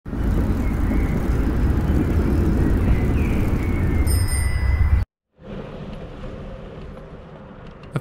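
Loud city street noise, a steady rumble of traffic, with a bicycle bell ringing once about four seconds in. After a brief dropout it gives way to quieter, steady street ambience.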